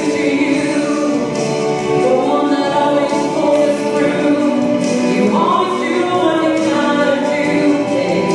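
A woman singing a slow song solo into a handheld microphone, her voice holding long notes without a break.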